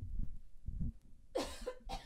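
A woman coughing twice, about a second and a half in, turned away from the microphone.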